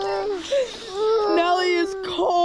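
A dog whining: a short whine, then a long, steady, high-pitched one from about a second in. She is wet and shivering from cold water.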